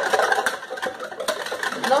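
Hand whisk beating eggs and oil in a bowl: a fast run of rattling clicks as the wires strike the bowl.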